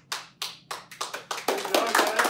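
A few people clapping their hands: separate claps at first, quickening into denser applause from about halfway through.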